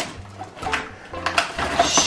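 Cardboard and plastic packaging of a children's tool set being handled and opened: a few light clicks and rustles.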